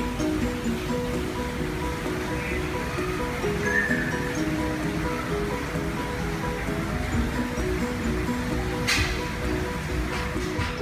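Background music: a repeating melody of short notes over a steady low hiss, with a single sharp click about nine seconds in.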